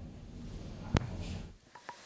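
Quiet background hiss with a single sharp click about a second in and two faint ticks near the end.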